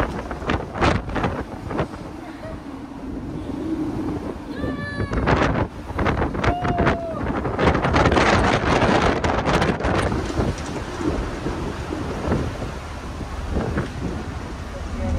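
Strong wind buffeting the phone's microphone on a moving ferry's open deck, in rough gusts that are heaviest past the middle, with a few brief voices and laughter.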